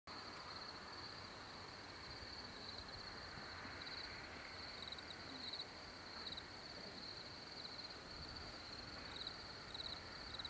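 Faint rural ambience: insects trilling steadily in a high, pulsing band over a low background hiss.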